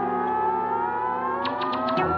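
Live band music with a long, slowly rising pitched tone over steady sustained chords, sounding siren-like, and a few light clicks in the second half.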